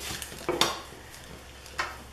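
A few light clicks and knocks of paper and small craft embellishments being moved and set down on a tabletop, with a sharper knock near the end.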